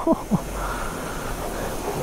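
Jet of a self-service car wash pressure lance spraying the front wheel and engine area of a motorcycle and washing mud off. It makes a steady hiss.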